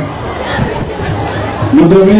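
Crowd of listeners talking and calling out together, a rough mass of voices while the speaker at the microphone pauses. A man's voice over the microphone comes back in near the end.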